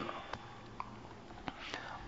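A pause in a man's speech: faint steady hiss with a few small mouth clicks and a soft in-breath near the end, just before he speaks again.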